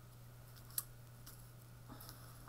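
Quiet room tone with a steady low hum, broken by one short sharp click a little under a second in and a few fainter ticks.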